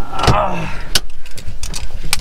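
Inside a car cabin: a brief rustle of movement, then a single sharp click about a second in, over a steady low engine rumble.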